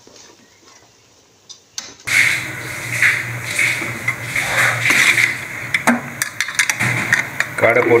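Metal ladle knocking and scraping against an aluminium pot as quail pieces are stirred in gravy, with a run of clinks in the second half. About two seconds in, a steady hiss and low hum start underneath.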